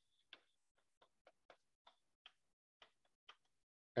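Chalk tapping on a blackboard while writing: a string of about ten faint, irregularly spaced ticks.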